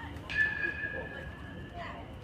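Metal baseball bat hitting the ball: a sharp crack about a quarter of a second in, then a high metallic ping that rings for about a second and a half. Spectator chatter runs underneath.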